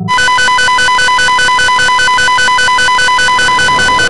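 A loud electronic ringing tone, like a telephone ringer, pulsing about seven times a second in an even rhythm, then cutting off suddenly.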